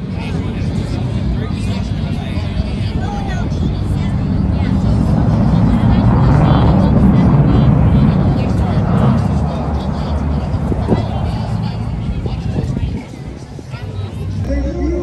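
Military fighter jet's engine noise as it flies a low display pass, swelling to its loudest about six to nine seconds in and then easing off, with crowd voices underneath.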